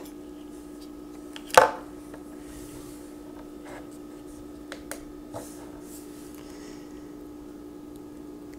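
Light handling sounds of cables and a phone being moved on a table: a few faint clicks and taps over a steady low hum, with one sharper, louder short sound about one and a half seconds in.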